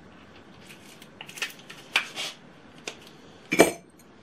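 Craft supplies being handled on a cutting mat: a few light clicks and taps, then one louder knock near the end.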